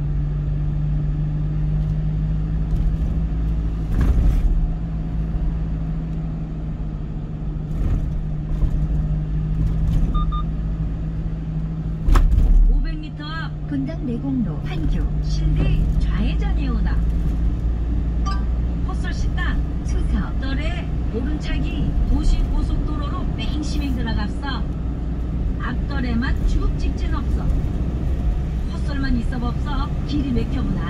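A car being driven on city streets, heard from inside: steady road and engine rumble, with a low steady hum in the first half and a heavy thump about twelve seconds in. From about thirteen seconds a person's voice runs over the driving noise.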